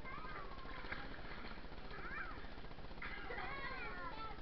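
High voices calling out briefly: a short call just after the start, another about two seconds in, and a longer wavering call about three seconds in, over a steady background hiss.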